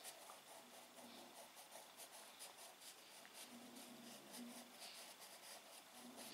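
Faint scratching of a pencil on paper as a child draws, in short irregular strokes.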